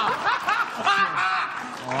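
People laughing and chuckling in short bursts, then a man voicing a drawn-out mock yawn, "hoam", near the end.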